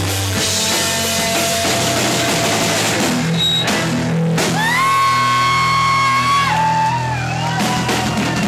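Live rock band playing loudly, with electric guitars and a drum kit. About halfway through, a long high note is held and then slides down.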